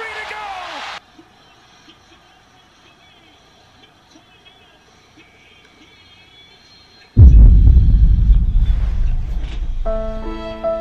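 Game commentary cuts off about a second in, leaving a quiet stretch; about seven seconds in a sudden, very loud deep rumble sets in and slowly fades.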